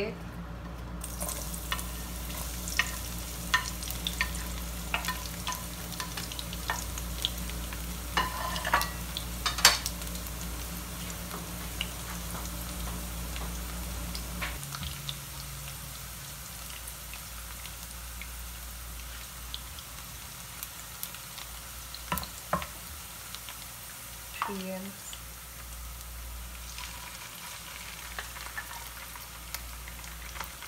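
Sliced garlic sizzling in olive oil in a nonstick frying pan, stirred with a wooden spatula that knocks and scrapes against the pan. The knocks come often in the first half and fewer later.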